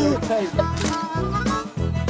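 Background music with a steady beat of about two low pulses a second.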